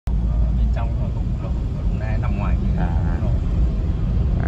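Steady low rumble of a car's engine and tyres on wet pavement, heard from inside the cabin while driving, with soft speech over it.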